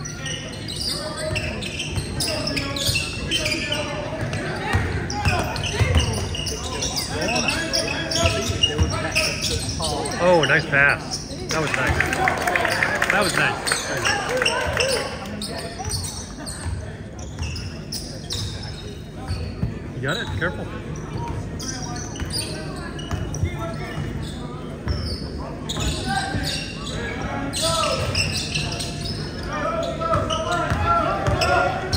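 A basketball dribbling and bouncing on a hardwood gym floor during play, with players' and spectators' voices in the large hall.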